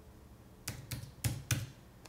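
A few quick keystrokes on a computer keyboard, about four or five sharp clicks in the second half, typing a short calculation.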